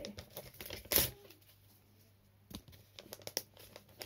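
Plastic wrapping of a trading-card multipack crinkling and being torn at by hand, which is hard to open. There is a sharp rip about a second in, then scattered crackles near the end.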